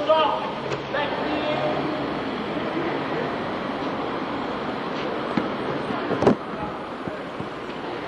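Background chatter: many voices talking over one another, with one sharp knock about six seconds in.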